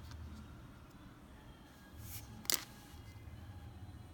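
Close handling sounds of fingers working a baitfish onto a double fishing hook, with a brief rustle and then one sharp click about two and a half seconds in.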